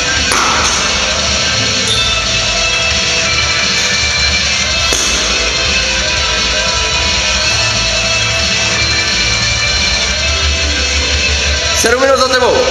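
Loud rock music with guitar, playing steadily with a pulsing bass.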